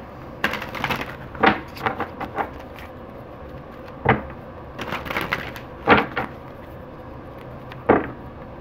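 A deck of cards shuffled by hand: about a dozen sharp, irregular slaps and flutters as the halves of the deck are split and pushed back together.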